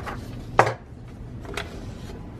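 A sharp knock about half a second in, then a fainter click about a second later, as hands handle the paper sheet over a sock on an open heat press.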